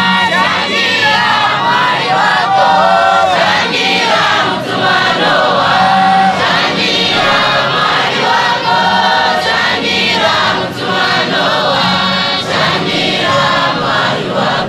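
Large congregation of men and women singing a hymn together in chorus, many voices at once, loud and steady.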